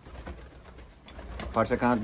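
Turkish roller (dönek) pigeons cooing faintly in a loft.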